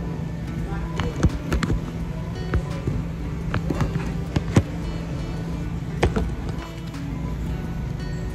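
Handling noise from a phone camera being set up: a scattered series of sharp knocks and clicks, some in quick pairs, as fingers fumble with the phone close to its microphone, over background music.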